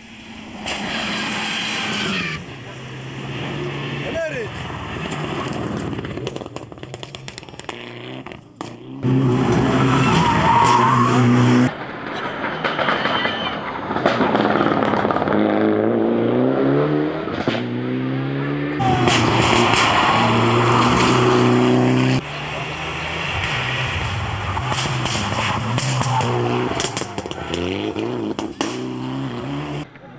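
A Mitsubishi Lancer rally car's turbocharged four-cylinder engine revving hard as it drives past on a stage. The pitch climbs and drops again and again through gear changes, and the sound cuts abruptly between separate passes.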